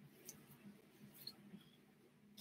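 Near silence: room tone with a few faint, brief ticks spread across the two seconds.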